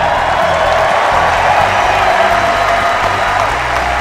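Large stadium crowd cheering and applauding in a dense, steady wash that swells at the start and begins to fade near the end, with music playing underneath.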